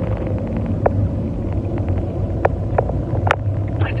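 Steady low road and engine rumble inside a moving car's cabin, with a few short faint clicks.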